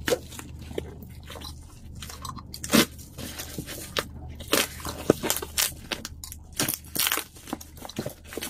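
Bubble wrap and packing tape being pulled and peeled off a parcel by hand: irregular plastic crinkling and crackling, with one louder crackle about three seconds in.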